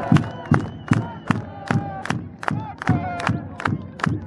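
A football crowd chanting and shouting to a steady drumbeat of about two and a half beats a second. Short raised voices cut in between the beats.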